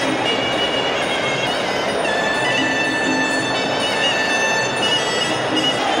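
Live Muay Thai sarama music: a pi java (Thai oboe) playing long held notes that step from pitch to pitch over a steady background din.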